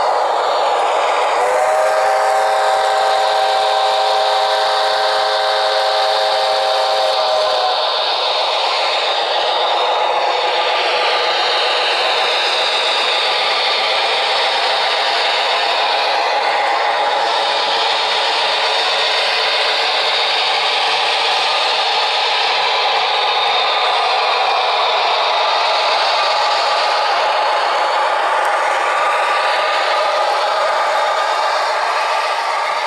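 OO-scale model steam locomotive's sound decoder blowing one long chime whistle of several notes together, about a second and a half in and lasting some six seconds. Under it and after it, the steady running clatter of the model train's wheels on the track.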